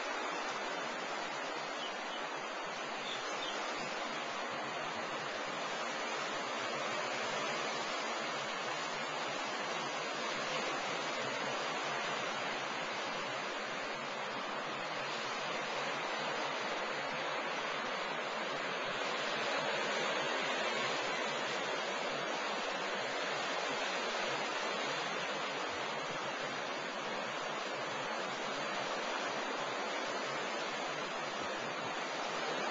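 Steady rushing of ocean surf, swelling slightly now and then.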